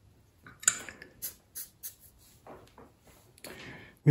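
A handful of light clicks and clinks from small tools being handled on the bench, as a flux brush is put down and the soldering iron is lifted out of its metal stand. A short soft scrape follows near the end.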